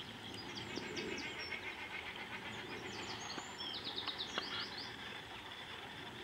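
Small birds calling in the background: a quick run of short, high, falling notes about half a second in and another near four seconds, over a steady outdoor hiss.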